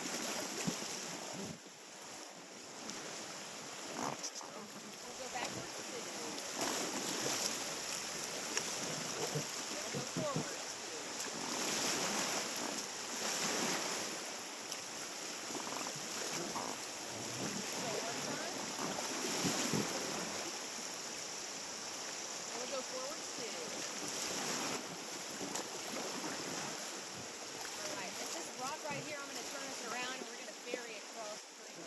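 River water rushing over rocks around a raft in a shallow rapid: a steady hiss that swells and eases, loudest around the middle.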